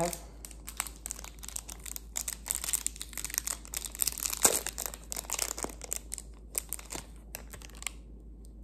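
Clear plastic packaging crinkling as fingers peel it off a small gecko food cup: irregular crackles throughout, thickest in the middle.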